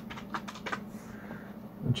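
Computer keyboard typing: a quick run of keystrokes that thins out after about a second.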